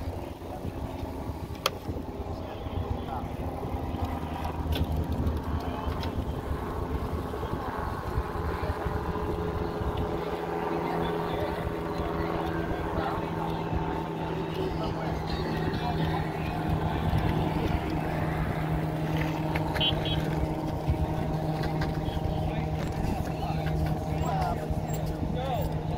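Busy outdoor ambience: indistinct voices of people nearby over a steady low hum.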